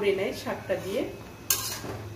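Metal spatula stirring and scraping leafy greens around a metal pan, with a sharp, sudden scrape about one and a half seconds in.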